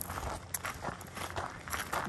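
Footsteps crunching on loose gravel, a few irregular steps.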